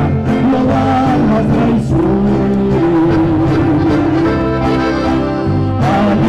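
Live band music with a steady bass line under held melody notes, mostly instrumental at this point.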